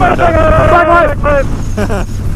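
2017 Harley-Davidson Street Bob's air-cooled V-twin running steadily at cruising speed, a low hum under wind noise, with talk and laughter over it.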